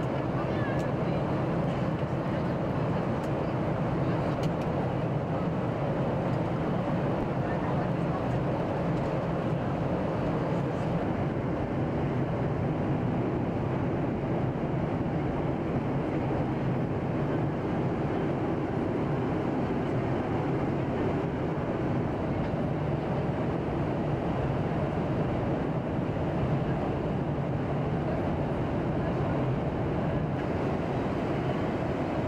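Steady jet airliner cabin noise: a constant low drone of engines and airflow that holds an even level throughout, heard during the descent.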